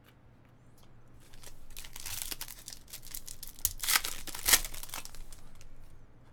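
A foil trading-card pack wrapper being torn open and crinkled: a run of irregular rustling, tearing bursts that begins about a second and a half in and is loudest about four and a half seconds in.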